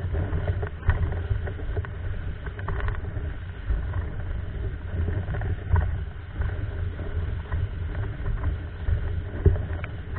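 Windsurf board moving across lake water: a continuous rushing, splashing noise with a heavy low rumble and a few sharper knocks of the board on the chop.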